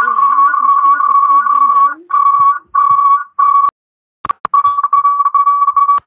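A loud steady whistle-like tone from a participant's open microphone on an online call, with a faint voice beneath it. The tone breaks up and cuts in and out from about two seconds in, with two sharp clicks in a gap near the middle. It is a fault in the sound from his end, which the teacher suspects is an internet problem.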